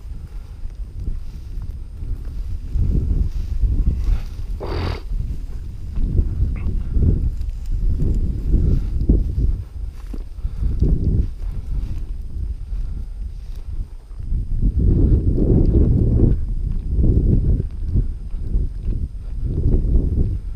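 Footsteps tramping through frozen grass and field stubble, with wind rumbling on the microphone in uneven gusts. A brief higher sound comes about five seconds in.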